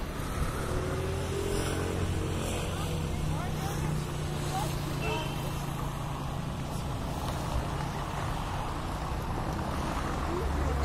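A steady low engine hum, like a motor vehicle idling or passing, with faint indistinct voices.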